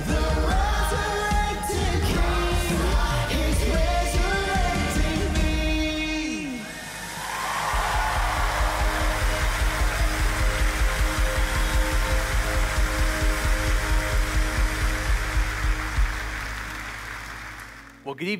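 A live worship band song with male and female lead vocals over the band. The singing stops about six seconds in, and the band holds sustained chords over a steady low beat with a bright wash of noise on top, fading out near the end.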